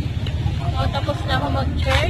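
People's voices talking over a steady low rumble; the voices come in a little under a second in.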